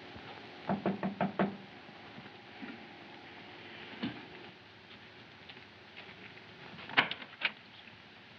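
Knocking on a door: about five quick raps about a second in. Near the end comes a sharp click and a second one as the door is opened.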